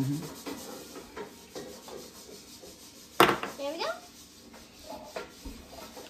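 Faint rubbing of hands spreading moisturizer over a man's face, with one sharp click about three seconds in.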